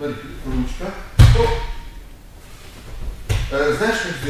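A loud single thump on a wrestling mat about a second in, with a smaller thump near the end.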